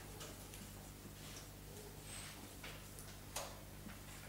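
Marker writing on a whiteboard: faint, quick scratchy strokes, the loudest about three seconds in, over a low steady hum.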